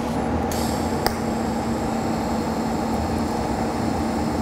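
Low-amperage DC TIG welding arc on thin Inconel 625 tubing, running at about 22 amps with a thoriated tungsten and argon shielding gas. It makes a steady hiss with a low hum, and there is one click about a second in.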